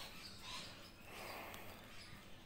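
A person blowing through a slotted kitchen spatula dipped in detergent bubble mix: a faint breathy hiss, a short puff and then a longer one.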